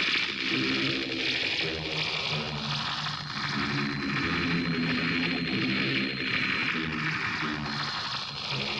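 Live open-air concert sound as a metal song ends: a large crowd cheering, with pitched stage noise underneath and a thin steady high whine in the middle and again near the end.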